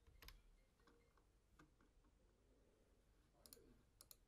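Near silence with a few faint computer mouse clicks spread through it.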